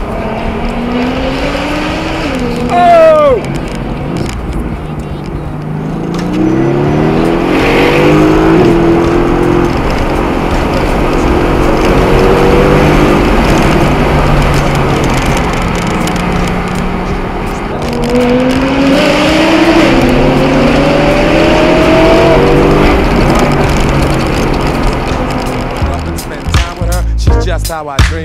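Car engine accelerating hard, its revs rising in long pulls and dropping between them as gears change, with a brief sharp squeal about three seconds in.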